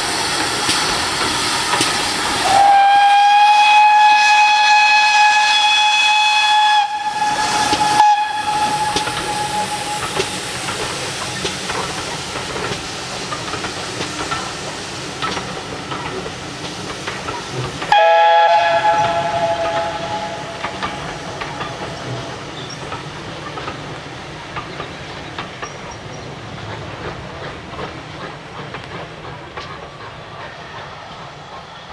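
GWR 2251 Class 0-6-0 steam locomotive No. 3205 passing with a train of coaches. Its steam whistle sounds for about four seconds, starting about three seconds in. A sharp knock follows, and a second, lower whistle sounds just past halfway. Throughout, the rolling of the coach wheels on the rails fades as the train moves away.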